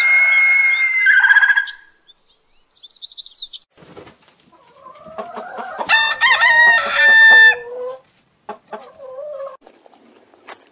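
A rooster crows once, loud and lasting about three seconds, starting about five seconds in, and a few short hen clucks follow. A loud bird call and some high chirps come in the first few seconds.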